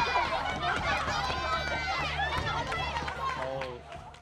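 Excited chatter from a group of women's voices talking and exclaiming over one another, over a low steady hum, fading out near the end.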